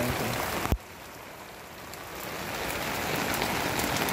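Steady rain falling as an even hiss. About three-quarters of a second in there is one sharp click, and the rain drops quieter, then slowly builds back up.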